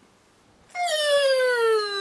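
A man's voice holding one long, high, wordless hum that falls steadily in pitch over about two seconds. It starts after a short silence and sounds like a drawn-out, doubtful 'hmmm' of hesitation.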